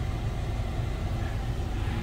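A steady low rumble of a vehicle's engine idling, heard from inside the cabin.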